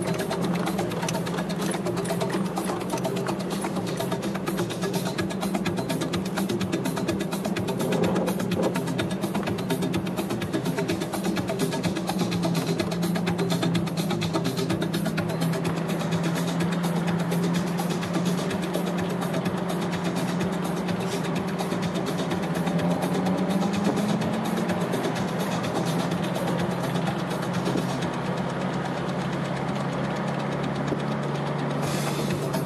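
Vehicle engine droning steadily as heard inside the cabin while driving, with a constant fine rattle; the pitch rises a little about three-quarters of the way through.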